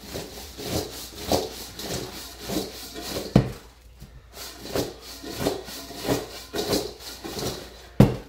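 Oiled, seasoned chunks of potato, onion and bell pepper shaken and tossed in a stainless steel mixing bowl: a string of soft, irregular knocks and rattles as the pieces hit the metal. There is one sharper knock a little over three seconds in, then a brief lull.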